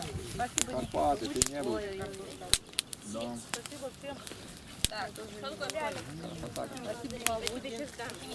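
Indistinct conversation among several people, with scattered sharp clicks.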